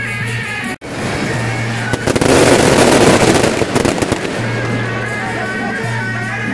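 Firecrackers going off in a loud, dense, rapid crackle for about two seconds, starting about two seconds in, over steady procession music.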